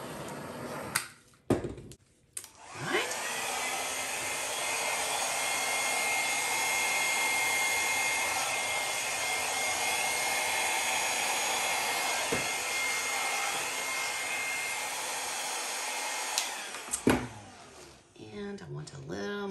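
Handheld hair dryer blowing wet acrylic paint across a canvas. It comes on about three seconds in and runs steadily with a faint high whine, then is switched off with a click near the end.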